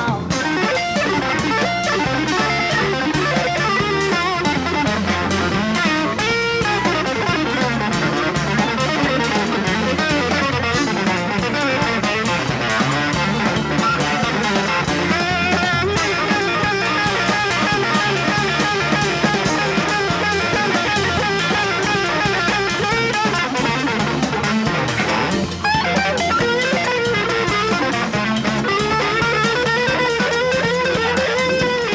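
Live band playing, led by an electric guitar on a hollow-body archtop soloing in quick runs and bent notes over the drums.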